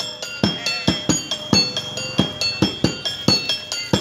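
Topeng monyet street-show accompaniment: a hand-beaten drum kept in a quick, steady rhythm, with small metal percussion ringing out bright clinking tones over the beats.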